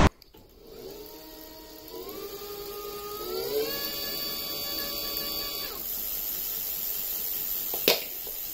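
Tongsheng TSDZ2 mid-drive motor running with no load, a whine that steps up in pitch twice, holds steady and then stops about six seconds in. A sharp click near the end.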